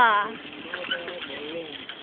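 A man's voice: a drawn-out exclamation falling in pitch at the start, then only faint murmured voices.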